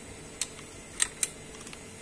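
Three short, light clicks from wiring connectors on a Webasto Thermo Top heater being handled and pulled off the control unit.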